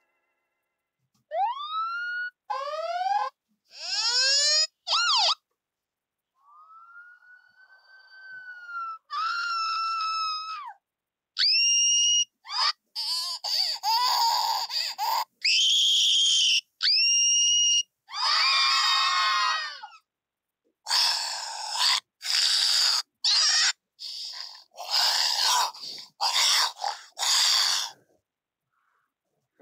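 A string of short sound-effect previews from a video-editing app's library, each cut off abruptly. Rising and falling siren wails come first, then from about the middle on a run of assorted recorded screams.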